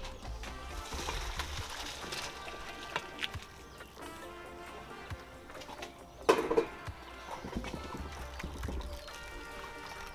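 Low background music, with water splashing as boiled spaghetti is poured into a plastic colander over a bowl in the first couple of seconds.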